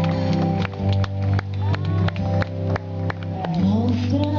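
Live band music with a steady bass and a regular beat. Near the end a voice slides up into singing.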